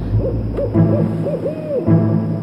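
A quick series of about six warbling owl hoots, each rising and falling in pitch, over low sustained background music.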